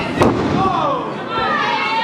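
A single sharp smack of a wrestling strike in the ring about a quarter-second in, over the small crowd's shouting and calls.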